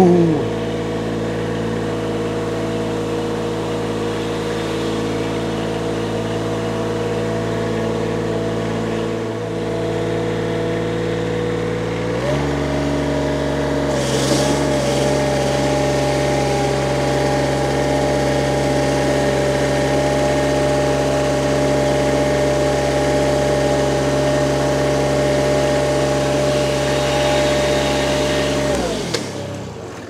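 Diesel engine of a Toro Greensmaster 3250-D ride-on triplex reel mower running at a steady working speed as it drives across the lawn. The note steps up slightly about twelve seconds in. Near the end the engine runs down and stops.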